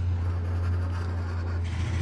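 A coin scraping the coating off a scratch-off lottery ticket, over a steady low hum.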